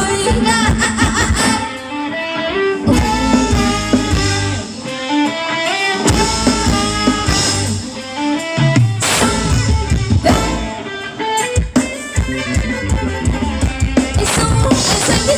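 Thai ramwong dance-band music with guitar and drum kit, a melody line of held notes over a steady beat.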